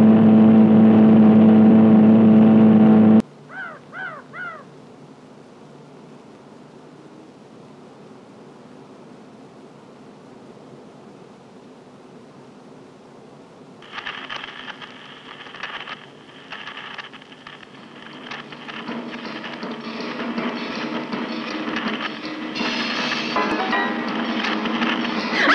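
Film soundtrack music: a loud held chord cuts off sharply about three seconds in, followed by a few short chirps and a low, quiet hum. About halfway through, a busier, rising passage starts and grows louder toward the end.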